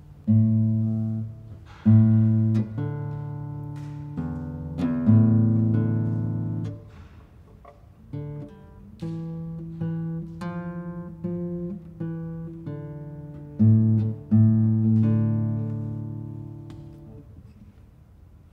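Nylon-string classical guitar played slowly and a little haltingly, single plucked melody notes over low bass notes that ring and die away, with short pauses between phrases; a last note rings out and fades near the end. It is a young player trying out an unfamiliar sight-reading exercise in his practice time.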